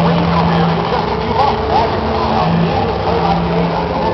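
Experimental sound installation playing through old metal horn loudspeakers: steady humming tones that break off and come back, with voices over them.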